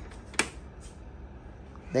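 Plastic desk fan head being tilted by hand: one sharp click about half a second in and a fainter one shortly after, over a faint steady hum.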